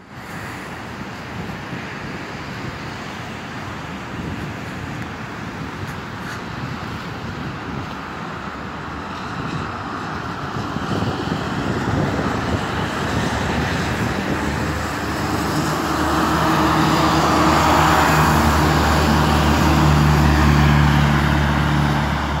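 Road traffic on wet pavement, then a bus passing close by. Its engine drone grows steadily louder from about two-thirds of the way through and peaks near the end.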